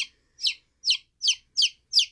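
A five-day-old chick peeping loudly and steadily, about two and a half sharp falling peeps a second: the distress call of a chick held apart from its brood-mates.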